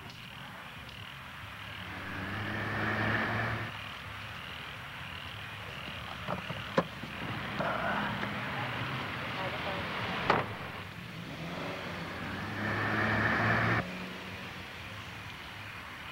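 A car's engine running, louder twice for a second or so as it moves, with two sharp knocks in between.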